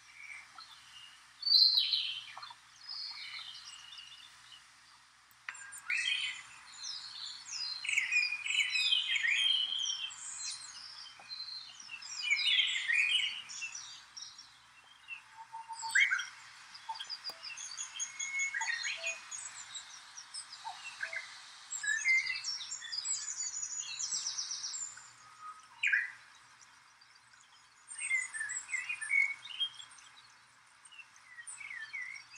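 Several songbirds singing and calling in overlapping phrases of quick chirps, whistled notes and a fast trill, over a steady faint hiss.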